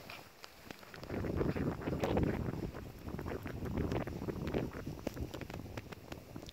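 Wind buffeting the microphone: a low rumble that rises about a second in and eases off near the end, with scattered light clicks over it.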